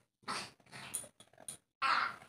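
A baby whimpering and fussing in a few short, soft sounds.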